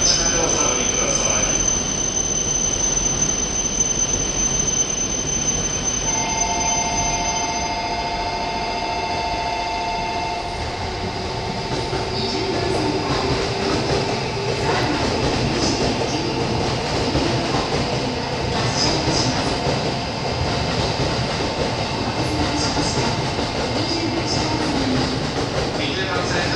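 Electric train running through a station, with a steady rumble of wheels and motors and a wavering whine in the second half.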